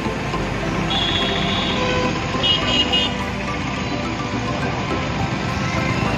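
Busy street traffic: motorcycles and auto-rickshaws running past, with short high-pitched horn beeps about a second in and again, in quick pulses, at around two and a half seconds.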